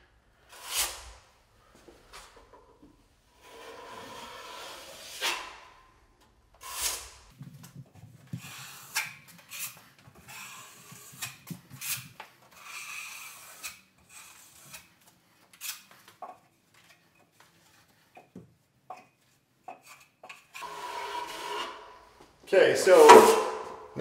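Steel drywall trowel scraping joint compound off a hawk and spreading it across a wall joint: a string of short rasping scrapes and swishes with light clicks between them, the loudest stroke near the end.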